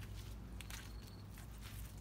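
Faint footsteps of a person walking on the ground, a series of soft irregular steps over a low steady hum.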